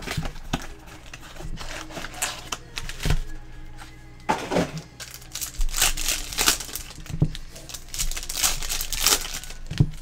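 Foil trading-card pack wrappers crinkling and tearing in the hands as packs are pulled from a hobby box and ripped open, an irregular run of crackly rustles.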